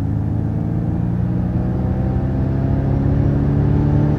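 Extended-range all-wheel-drive Ford Mustang Mach-E accelerating hard, heard inside the cabin: a hum from the electric drive that climbs slowly in pitch and gets a little louder, over steady road and tyre rumble.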